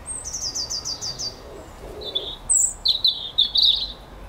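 Small songbird singing: a quick run of about eight short notes, each falling in pitch, then after a brief pause a louder burst of chirping notes.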